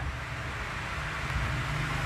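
Steady low background rumble and hiss, with a faint low hum coming in about halfway through.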